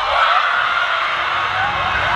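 A group of young women shouting and cheering together in celebration, many voices overlapping.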